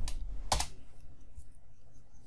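Computer keyboard keystrokes: a sharp key press at the start and a louder one about half a second in, then a few faint ticks.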